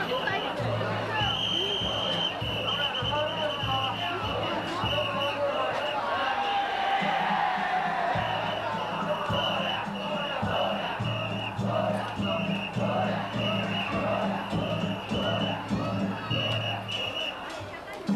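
Crowd chatter with danjiri festival music carrying over it: a steady run of drum and gong beats and a high held piping note that breaks off and resumes.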